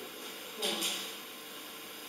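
A short, soft, breath-like exhale about half a second in, over a steady background hiss.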